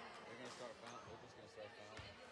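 A basketball bouncing a few times on a hardwood gym floor, over a low murmur of spectators' voices.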